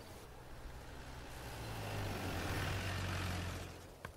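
Jeep-style SUV's engine running with a steady low drone; a rush of noise swells about two seconds in and dies away near the end.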